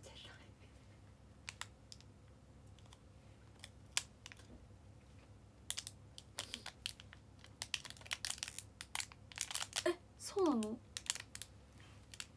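Quick, irregular light taps and clicks like fingers typing, coming in clusters in the second half. Near the end there is a short voiced sound falling in pitch.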